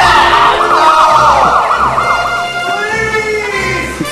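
Emergency-vehicle siren in a fast yelp, slowing to a rising and falling wail about halfway through.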